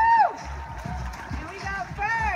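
A high voice whoops once, loud and rising then falling in pitch, right at the start. Shorter whoops come near the end, over people talking and background music.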